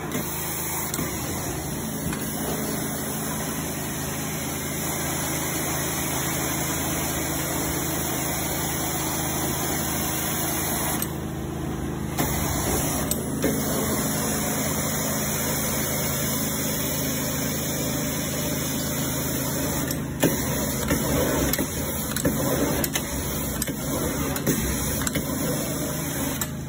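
Carpet extractor running steadily as the steam-cleaning wand is drawn over the carpet, sucking up the cleaning solution. The hiss cuts out briefly about eleven seconds in, and a few short knocks come later on.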